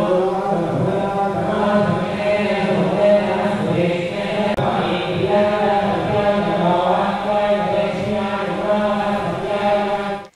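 Chanting of Hindu devotional mantras during a temple puja: a steady, continuous recitation on a held pitch.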